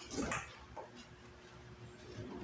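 A puppy whimpering briefly near the start, a short call rising in pitch, with a fainter second sound just after.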